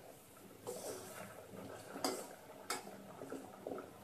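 A metal spoon clinks sharply against a steel pot twice, about two seconds in and again just after, over the faint sound of sugar syrup boiling.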